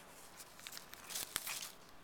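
Faint crinkling and rustling of a plastic shopping bag and a paper tag as a plush toy is handled, with a louder burst and a sharp click a little over a second in.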